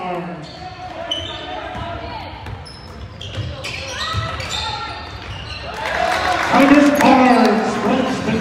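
Gym game sound: a basketball bouncing on a hardwood court with short sneaker squeaks, and crowd voices growing louder in the last two seconds.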